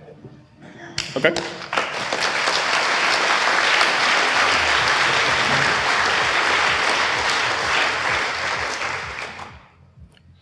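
Audience applauding for about eight seconds. The applause starts about a second in and dies away near the end.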